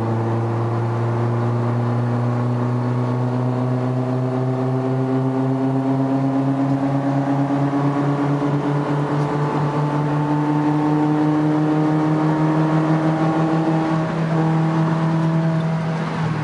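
Car engine heard from inside the cabin, accelerating in fifth gear: one steady drone whose pitch climbs slowly and evenly, with a slight pulsing in loudness in the second half.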